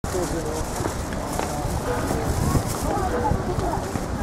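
Outdoor street crowd: many pedestrians' voices chattering indistinctly, with footsteps and a continuous low rumble underneath.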